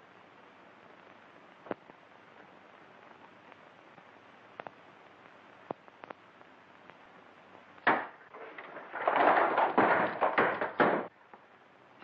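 Over a steady film-soundtrack hiss with a few faint knocks, a sharp thump comes about eight seconds in. It is followed by about two seconds of loud clattering as boxes and store goods tumble off the shelves and two people fall to the floor among them.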